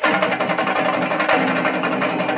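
Live drum troupe playing a fast, loud rhythm of many rapid strokes with cymbals, a held melodic line sounding over it.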